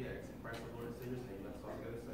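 A man's voice speaking faintly and indistinctly, too quiet to make out words.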